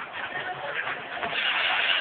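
Funfair din around a running giant pendulum ride: a steady mix of crowd noise and ride machinery that grows louder over the second half.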